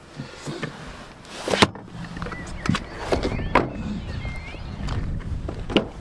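Low rumbling handling noise with several sharp clicks and knocks, the loudest about a second and a half in.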